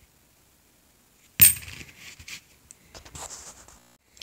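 A brass Presidential dollar coin set down with a single sharp, ringing clink about a second and a half in, followed by faint clicks and rustles of coins being handled.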